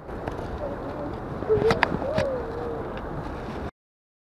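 Steady rush of a river flowing over rocks, with a faint wavering tone and a few small clicks about halfway through. The sound cuts off abruptly near the end.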